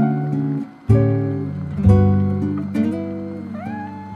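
Slow, soft acoustic guitar music, plucked chords struck about once a second and left to ring, with a short rising gliding note near the end.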